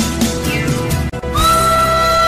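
Pan flute instrumental music. About half a second in there is a falling, sliding sound, then a brief drop in the music, and a new held flute note starts at about one and a half seconds.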